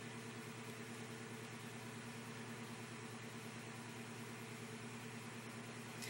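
Quiet, steady background hum with a hiss: room tone, with no distinct events.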